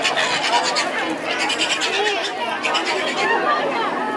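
A crowd of spectators talking and calling out over one another, a steady mixed chatter of many voices.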